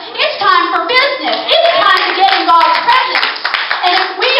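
Congregation clapping in a church sanctuary, with voices talking and calling out over the claps.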